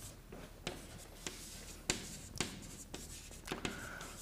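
Chalk on a blackboard as words are written: a series of short, sharp taps and scrapes, irregularly spaced.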